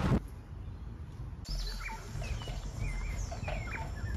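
Birds chirping and calling in leafy surroundings, a string of short whistled calls that start about a second and a half in. A brief burst of noise opens it.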